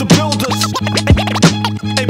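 Hip hop beat with turntable scratching: short rising and falling sweeps cut over a steady bass line and kick drum.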